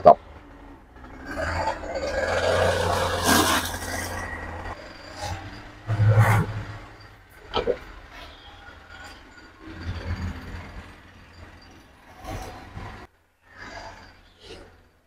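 Handling noises from a white foam cooler being brought over and set up: a few seconds of rubbing and scraping, a sharp thump about six seconds in, then lighter knocks and clicks, over a low steady hum.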